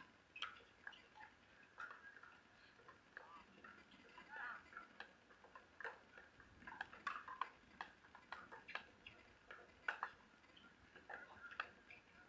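Pickleball paddles striking the plastic ball: faint, irregular sharp pops from several rallies at once, with louder hits about seven and ten seconds in.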